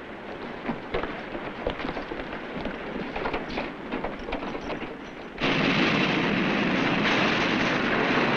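Running footsteps and knocks on a steel ship's deck over a low rumble, then, about five and a half seconds in, a sudden loud steady hiss of steam jetting out of a doorway below decks, from damage done by a mine explosion.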